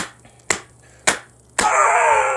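Two paperback picture books smacked together, three sharp slaps about half a second apart. About one and a half seconds in, a man lets out a loud, drawn-out wail that falls in pitch.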